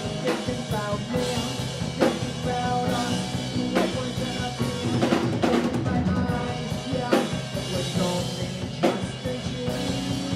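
Live rock band playing an instrumental passage: full drum kit with kick, snare and accented crashes over sustained bass guitar, electric guitar and keyboard parts.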